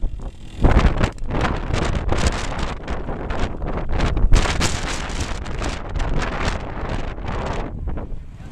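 Wind buffeting the microphone in uneven gusts, over a vintage trials motorcycle's engine running as the bike is ridden slowly up through a section.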